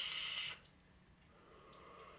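Vape box mod and tank hissing steadily as a long draw is taken through it with the coil firing. The hiss stops suddenly about half a second in, followed by a faint, soft exhale of the vapour.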